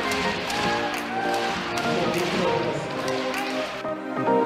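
Background music with steady held notes over floorball arena sound: crowd noise and occasional sharp taps of sticks and ball. Near the end the arena sound drops out, leaving the music alone.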